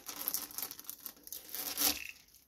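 Clear protective plastic film being peeled off a painted RC truck body, crinkling and rustling irregularly, with the loudest crinkle near the end.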